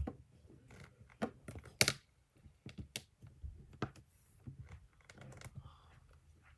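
Irregular light taps and clicks from fingers on a tablet and its rubbery protective case, about a dozen short knocks spread unevenly.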